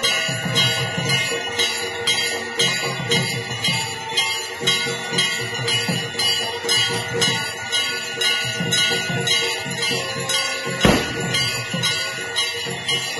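Temple bells ringing continuously in a rapid, even rhythm of about three strokes a second, with a low beat underneath, the ringing that accompanies the waving of the aarti lamp. A single sharp knock stands out near the end.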